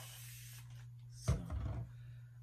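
Hand spray bottle misting a lock of hair, a steady hiss that stops a little under a second in. About half a second later comes a low thump with a brief rumble of handling noise.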